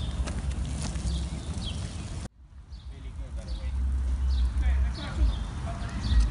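A low, uneven rumble under distant voices, which drops out abruptly about two seconds in and then builds back up.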